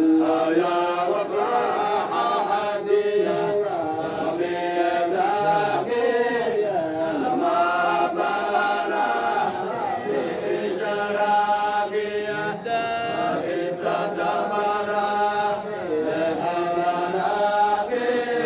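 A group of men chanting a Qadiriya Sufi dhikr together in unison, several voices holding long sustained melodic lines that step up and down without a break.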